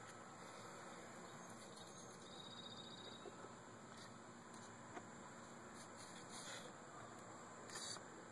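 Near silence: faint background hiss with a few soft clicks and rustles. A brief, faint high-pitched trill comes a little over two seconds in.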